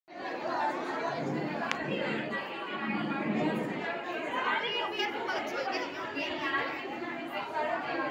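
Background chatter of many people talking over one another, with no single clear speaker.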